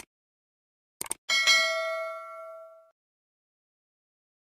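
Subscribe-button animation sound effects. A click comes right at the start and a quick double click about a second in, then a single bell ding rings out and fades over about a second and a half.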